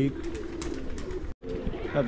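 Domestic pigeons cooing softly in a rooftop loft. The sound cuts out abruptly for an instant about a second and a half in, then the cooing carries on.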